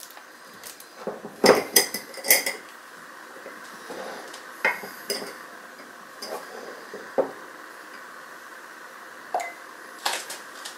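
Clinks and knocks of glassware and utensils being handled: a glass flour jar's clamp lid opened and a spatula scooping flour against the glass. There is a quick cluster of knocks in the first couple of seconds, then a few single clicks spaced a couple of seconds apart.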